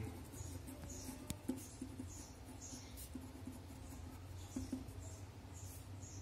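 Pen writing on paper: a run of short, faint scratching strokes as a word heading is written, with a few small taps of the pen, over a low steady hum.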